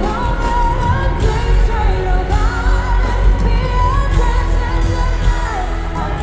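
Female pop vocalist singing over a band with heavy bass; the voice comes in right at the start and carries a wavering melody throughout.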